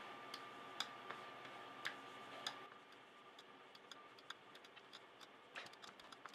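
Faint, irregular clicks of a computer mouse, about five sharp ones in the first half and lighter ticks after, over a faint steady high tone that stops about halfway.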